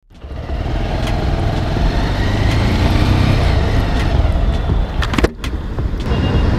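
Engine and road noise from a motorcycle being ridden, a loud, steady rumble that begins abruptly. A few sharp clicks and a brief dip come about five seconds in.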